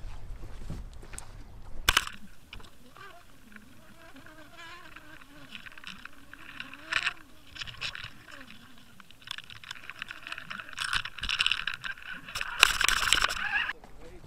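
Underwater audio from a camera towed in the river: a faint whine that wavers up and down in pitch, under bursts of hiss and crackle from water rushing past. It starts with a sharp click about two seconds in, the hiss is loudest near the end, and it cuts off suddenly.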